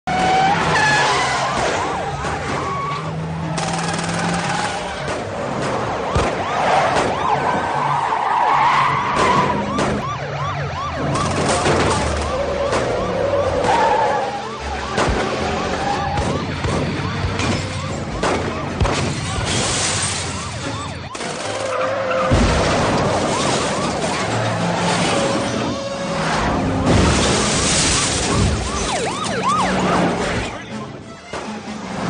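Police car sirens wailing and yelping, with fast rapid up-and-down cycles through much of the stretch, over the noise of speeding cars. A film score plays underneath.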